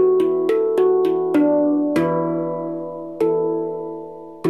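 Handpan played by hand: a quick run of struck notes over the first two seconds, then two single notes, each ringing on and slowly fading over a steady low note.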